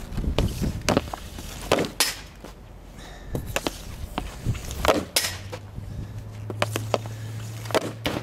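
Easton SE16 hockey stick blade striking pucks on a wet shooting pad: a string of sharp slaps and clacks as shots are taken. A steady low hum comes in about five seconds in.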